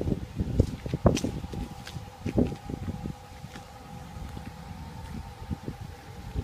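Wind buffeting the microphone outdoors in uneven low gusts, with a few soft footsteps early on. A faint steady tone sits in the background from about a second in.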